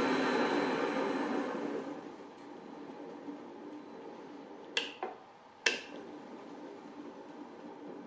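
A 1950s pillar drill's motor, run through a VFD, winding down over about two seconds on the drive's slow-down ramp. Then come two sharp clicks of the control switch about a second apart, over a faint steady high whine.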